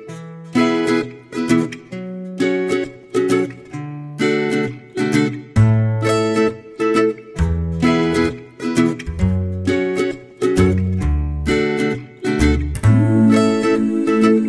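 Background music: an upbeat instrumental of plucked-string notes in a steady rhythm, with a deeper bass part coming in about five and a half seconds in.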